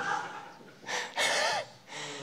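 A man's breathy laughing exhales close to a microphone: a short puff just under a second in, then a longer, louder one with a little voice in it.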